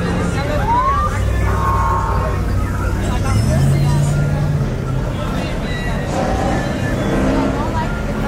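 Cars driving slowly past, engines running with a low hum, over the voices of a crowd of onlookers.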